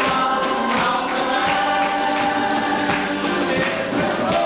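Congregation singing a gospel worship song together, with hand claps keeping a steady beat.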